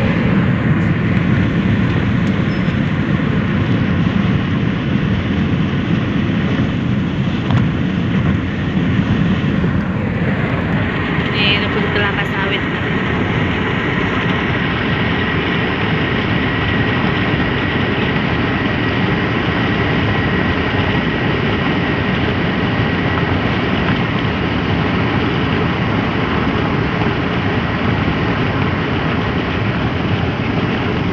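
Steady road noise heard from inside a car cruising on a concrete highway: tyre rumble and wind with engine drone underneath. About twelve seconds in, a faint, steady, high-pitched whine joins it.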